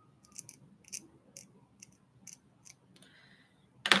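A small hand tool scraping a plastic model kit part in short, sharp strokes, about two a second.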